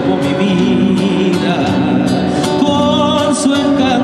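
Live Argentine folk music from a small band: plucked guitar with a wavering sustained melody line over it and regular percussive beats.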